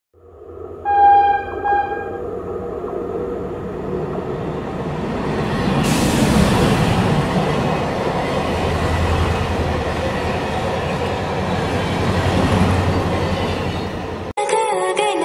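A passenger train's locomotive sounds its horn twice in quick succession in the first two seconds as it approaches. The rumble of the train builds and turns into a loud rush as the locomotive passes close, about six seconds in. Then come the steady rolling and clatter of the passenger coaches going by.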